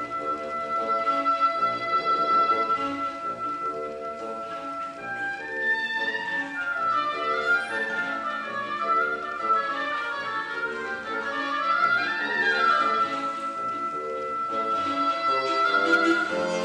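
Oboe leading a čoček tune over a chamber-orchestra accompaniment with a steady pulsing beat: it holds one long high note, then winds through an ornamented melody about five seconds in, and settles back onto the long high note near the end.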